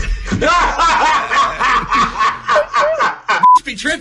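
A man laughing hard in quick, repeated breathy peals. A short steady beep cuts in near the end.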